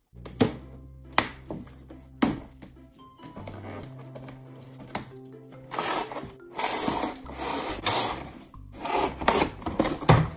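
Cardboard toy box being handled and opened: three sharp clicks in the first couple of seconds, then two longer stretches of scraping and rustling of cardboard and plastic in the second half, over a steady music track.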